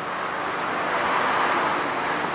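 Mitsubishi Pajero Full 3.2 DI-D four-cylinder turbodiesel running with a steady noise heard from the open engine bay, rising slightly in level over the first second. The intake system has just been decarbonized, and the engine is running well.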